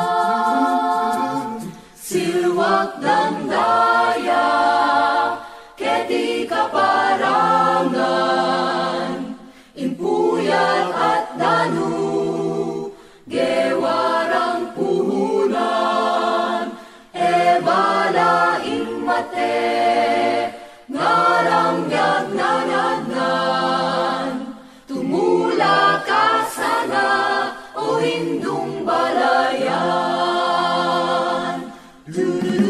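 Background music: a choir singing without instruments, in phrases of about four seconds each, separated by short breaks.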